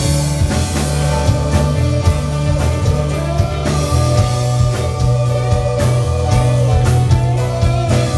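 Live rock band playing a song with electric guitars, bass, keyboard and drum kit, the drums keeping a steady beat.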